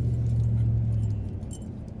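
Low drone of a 2004 Ford F-150's 5.4-litre V8 and road noise, heard inside the cab while driving. The hum fades away about a second in.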